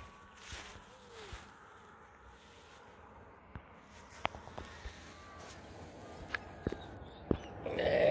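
Quiet outdoor ambience with a few scattered light clicks and rustles of footsteps on dry grass, and a louder muffled sound near the end.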